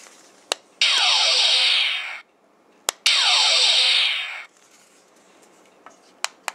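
Two electronic phaser-firing sound effects from the small speaker of a Diamond Select Star Trek II toy hand phaser. Each is a hissing burst of about a second and a half, with falling tones inside it, and each fades out at the end. A sharp click comes just before each burst.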